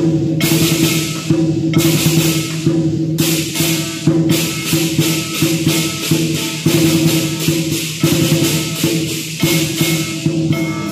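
Southern lion dance percussion: drum, gong and a large pair of hand cymbals playing a fast, steady beat. The cymbals are clashed short between stretches where they are left ringing.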